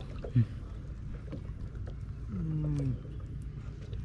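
Short wordless vocal sounds from a man's voice: one brief falling sound about half a second in, the loudest moment, and a longer wavering one near three seconds, over a low steady rumble.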